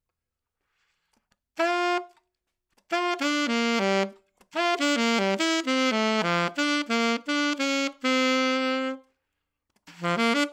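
Alto saxophone played loud: after a second and a half of silence, short phrases of separate notes with brief breaths between them, a held low note ending about nine seconds in, and a new phrase starting near the end. The tone is rich in high harmonics, the sign of loud playing where the reed closes off the mouthpiece for part of each vibration.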